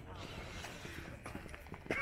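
Faint voices of people nearby over low, even outdoor background noise, with a few light clicks, the clearest near the end.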